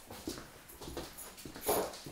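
A dog gives a short whine near the end, the loudest sound here, over soft, repeated knocks of footsteps on a wood floor.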